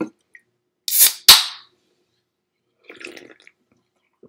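An aluminium drink can being cracked open about a second in: a brief hiss, then a sharp crack with a short burst of fizz. Softer sipping sounds follow as it is drunk, around three seconds in.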